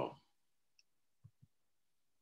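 Near silence broken by two faint short clicks about a second and a quarter in, a fifth of a second apart.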